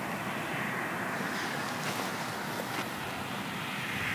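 Steady rushing noise with a few faint clicks, much quieter than the song.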